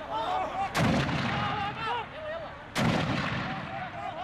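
Mortar fired twice, about two seconds apart, each shot a sharp blast with a low rumbling tail, while men shout between the shots.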